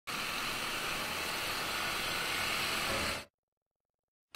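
A steady, even hiss that fades out a little over three seconds in, leaving silence.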